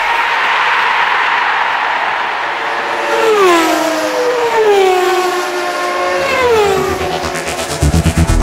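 Racing-car engine sound effects in an electronic track: a rush of noise, then several engine notes that each fall in pitch as if cars were passing, one after another. A heavy electronic beat comes in at the very end.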